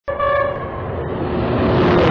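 United Aircraft TurboTrain passing at speed: a short horn blast right at the start, then a rush of wheel and air noise that builds as the train nears and passes close by.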